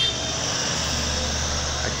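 A pickup truck driving past, its engine rumble and tyre noise steady for about two seconds.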